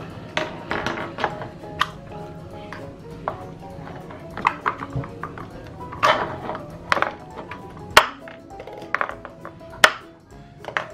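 Hard plastic popsicle-mold parts clicking and tapping as the stick handles are pulled out of the mold and set down on a cutting board, a string of sharp clicks with the loudest near the end, over background music.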